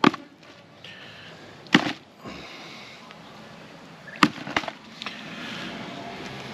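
Halved mud crabs being whacked to knock the guts out: a sharp whack at the start, another near two seconds and another just past four seconds, followed by a few lighter knocks.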